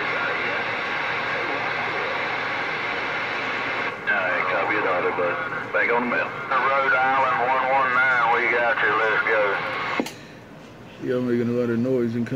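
A Galaxy CB base radio receiving a weak distant station: a steady rush of static, with a faint, garbled voice buried in it from about four seconds in. About ten seconds in, the signal cuts off with a click, leaving low hiss, and clear speech starts just before the end.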